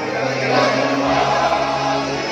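Mixed SATB choir singing held, sustained chords, with a lower note entering about a second in.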